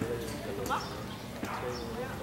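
Indistinct voices of people talking in the background, with a few faint clicks.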